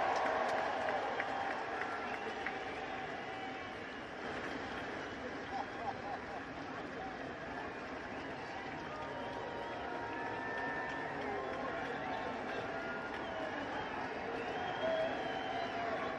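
Large ballpark crowd cheering and applauding, with scattered shouts and voices. It eases off over the first few seconds, then holds at a steady level.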